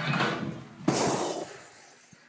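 Classroom noise as the song's music stops, with a sudden thud about a second in that dies away, then fading out near the end.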